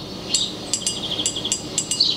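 Crisp, evenly spaced shaker-style percussion ticks, about five a second, over a faint steady high tone: the opening of a music clip's soundtrack before the singing comes in.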